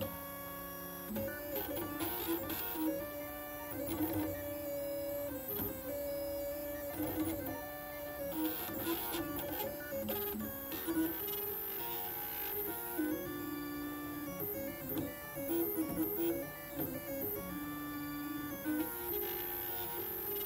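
Stepper motors of a belt-driven pen plotter whining in steady pitched tones, the pitch jumping to a new note every second or two as the pen head changes direction while tracing a drawing.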